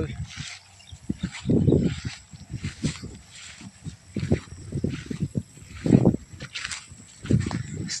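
Irregular close rustling and soft knocks with no steady pattern. There are a few louder dull swells about two seconds in, around six seconds and again near seven seconds.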